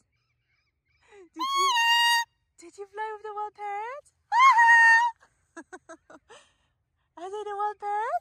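Macaw calling at close range: several loud, pitched squawks, some rising in pitch, then a run of short chirps, with silent gaps between the calls.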